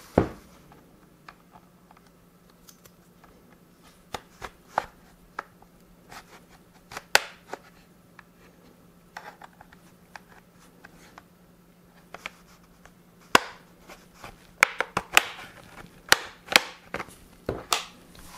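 Plastic retaining clips of an Acer Aspire 5 laptop's base panel clicking and snapping loose as a plastic plectrum-style pry tool is worked along the edge. The sharp clicks come singly and in small clusters, growing more frequent in the last few seconds.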